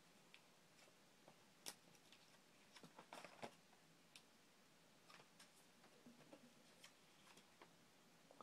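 Near silence: quiet room tone with a few faint, scattered clicks and ticks, a small cluster of them a little past the middle.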